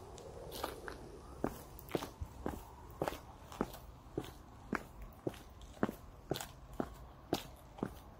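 Footsteps of a person walking at a steady pace, about two sharp steps a second.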